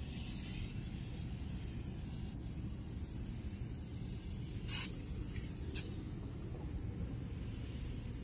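Two short hissing sprays from an aerosol can of foaming tire shine onto a car door panel, about halfway through and a second apart, the first a little longer. A steady low rumble runs underneath.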